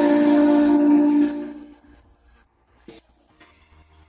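Male voice singing a cappella, holding one long note that fades out about a second and a half in, followed by near silence.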